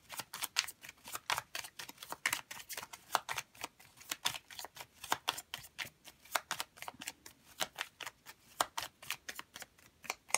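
An oracle card deck being shuffled by hand before a card is drawn: a quick, uneven run of soft card flicks and slaps, several a second.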